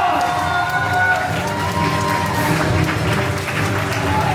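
A crowd of guests clapping and cheering, with music playing underneath.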